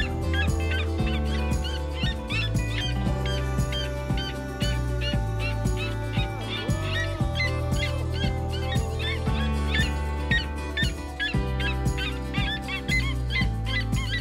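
Red-legged seriemas calling, a rapid run of high yelps repeated several times a second, over background music with steady held bass notes.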